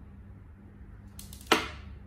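A small magnet salvaged from a phone speaker clicks sharply against metal once, about one and a half seconds in, after a few faint ticks, with a brief ringing fade.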